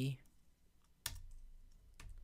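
A single sharp key press on a computer keyboard about a second in, with a few faint ticks after it.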